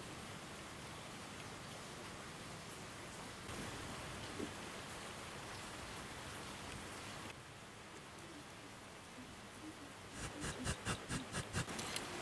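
A steady low hiss, then from about ten seconds in a quick run of clicks and rattles from handling the plastic fuse box.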